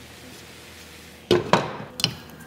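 Glass pan lid knocking against the metal rim of a frying pan as it is handled and lifted off: a quiet stretch, then two sharp clacks about a second and a quarter in, close together, and a third at the end.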